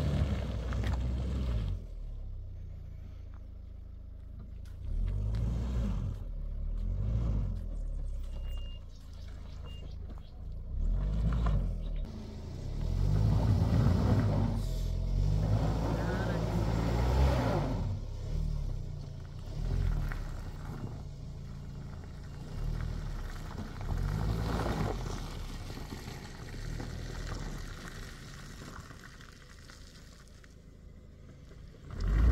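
A hatchback car's engine revving in repeated surges as it works its way out of deep mud, the loudest and longest push a little past the middle, then dying down toward the end.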